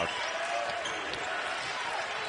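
A basketball being dribbled on a hardwood court, a few faint bounces over the steady noise of an arena crowd.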